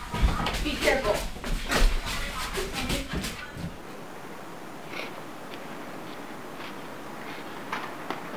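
Indistinct voices of several people in a small room for about the first three and a half seconds. After a sudden cut there is a steady faint outdoor background hiss with a few faint ticks.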